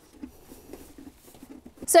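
Faint scattered small clicks and rubbing of hands pressing the lock seam of a galvanized sheet-metal duct pipe into its groove, followed near the end by a woman starting to speak.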